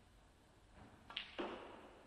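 Two sharp knocks about a quarter of a second apart, the second heavier and dying away over half a second.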